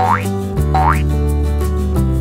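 Children's song backing music with two quick cartoon jump sound effects, each a short upward-sliding pitch: one at the very start and another just under a second in.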